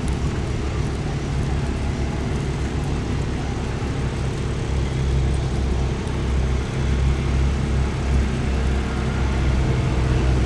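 A steady low rumble with a constant hum, like a running engine, throughout.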